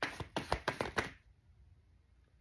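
Tarot cards being shuffled by hand: a quick run of about ten crisp card snaps over roughly the first second, then it stops.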